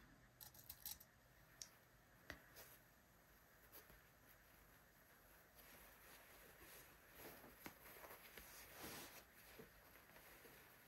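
Near silence with faint rustling of fabric being handled and a few small clicks as straight pins go through the lining and fly shield, the rustling a little more present near the end.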